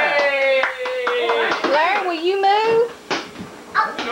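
A high-pitched child's voice holding one long, slowly falling vocal sound, then a second wavering call. Two short knocks follow near the end.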